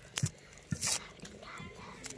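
A knife peeling the dry papery skin off a red onion: a sharp click about a quarter of a second in, then a crackly tearing sound about a second in. Two short, low, voice-like sounds come with them.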